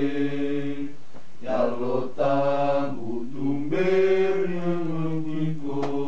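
Low voices singing a slow, chant-like hymn in drawn-out phrases, holding long notes with short breaks between phrases.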